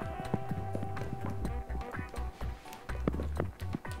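Background music with a steady low bass line. Over it come a run of light clicks and taps as a spatula scrapes soft filling out of a steel mixing bowl.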